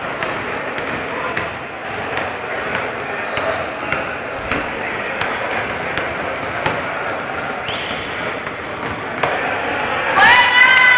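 A basketball bouncing on a gym floor in a reverberant sports hall, a scatter of sharp thuds over steady background talk from players and onlookers.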